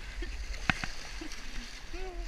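Fast-flowing water of a flood-swollen creek rushing around a kayak's hull, a steady wash with a low rumble. A single sharp knock comes about two-thirds of a second in.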